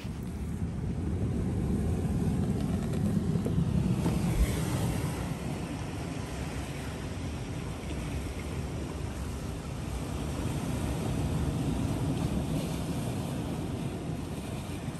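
Sea waves washing on a rocky shore, with wind rumbling on the microphone; the noise swells twice, early and again near the end.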